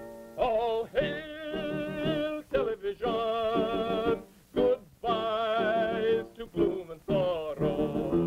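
A comic male character voice singing a slow song with a wide, wavering vibrato on long held notes, over a light musical accompaniment.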